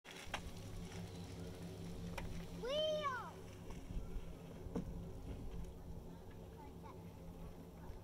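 A young child's short high-pitched call, rising and then falling in pitch, about three seconds in.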